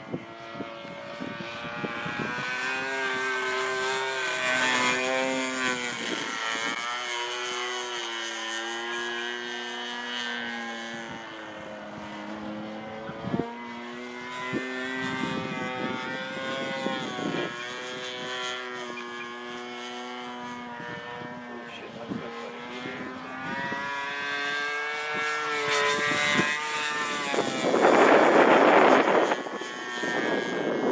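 Engine and 19x8 propeller of a radio-controlled Extra 330LT aerobatic model in flight. The note rises and falls in pitch with throttle and passes, and swells after the first couple of seconds. Near the end a loud rushing noise builds for about two seconds.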